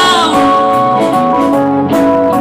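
Live rock-and-roll song on electric guitar with sustained, organ-like chords stepping from one to the next every half second or so. A held sung note trails off in the first half-second.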